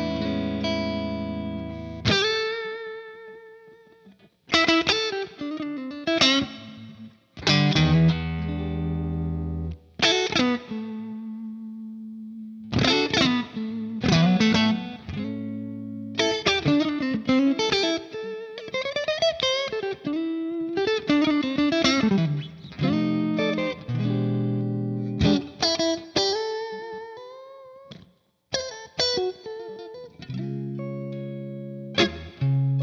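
Electric guitar, an LSL Saticoy, played through a J. Rockett Airchild 66 compressor pedal into a Silktone amp and Ox Box. It plays chords and single-note lines, with notes ringing out long and bent with vibrato, between short pauses.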